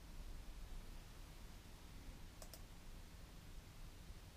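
Quiet room with a low steady hum, and two faint clicks close together about two and a half seconds in: the click of starting playback on the computer.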